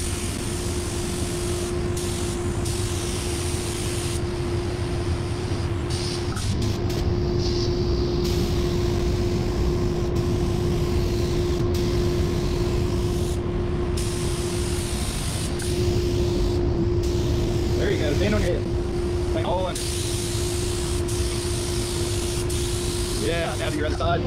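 Compressed-air gravity-feed paint spray gun hissing in bursts as the trigger is pulled and released, over a steady drone with a constant pitched tone.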